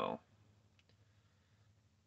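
A spoken word ends right at the start. Then a quiet truck cab: a faint steady low hum, with a few faint clicks.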